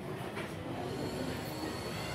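Steady low background noise with a faint, thin high-pitched tone running through it; no chanting or other distinct event.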